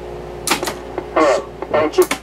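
Ansafone KH-85 answering machine, stuck off hook after recording, giving a steady tone that cuts off with a sharp switch click about half a second in as its front-panel control is worked by hand; another click comes near the end.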